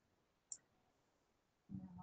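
Near silence with one faint, short click about half a second in.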